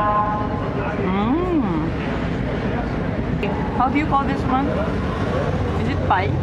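Wind buffeting the microphone: a steady low rumble running under a woman's voice.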